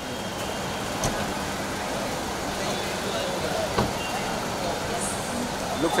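Steady street background noise with traffic, broken by two sharp clicks. A man calls out "look" near the end.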